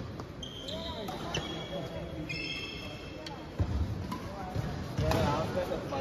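A badminton rally on an indoor court: shoes squeak briefly on the court floor in the first half, then racket hits on the shuttlecock and footfalls thud in the second half, all echoing in a large hall.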